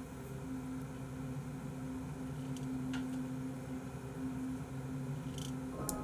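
A few short sharp clicks from a computer mouse as the page is scrolled, over a low steady hum.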